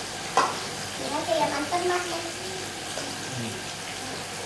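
Oil sizzling steadily in a wok as food deep-fries, with a sharp clink of a utensil about half a second in.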